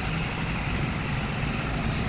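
Steady low rumble of road traffic passing close by: engines and tyres.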